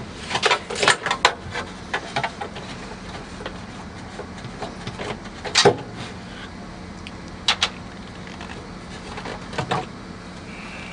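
Clicks and knocks of the plastic water trough and float parts of an undercounter ice machine being handled and unfastened: a cluster in the first second, one louder knock in the middle and a quick double click a couple of seconds later, over a steady low hum.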